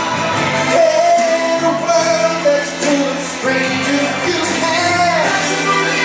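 A song sung live into a microphone over backing music, played through the hall's PA, with long held sung notes.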